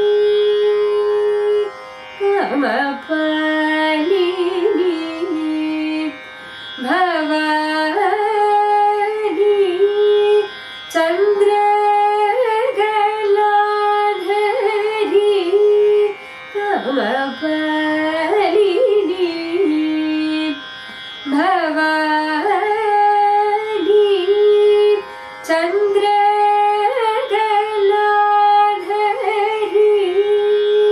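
A woman singing Carnatic classical music solo, holding long notes and sliding through oscillating ornaments (gamakas), with brief pauses for breath, over a steady tanpura drone.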